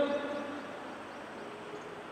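A man's voice trailing off at the start, then a pause filled only by a steady, faint hiss of room tone.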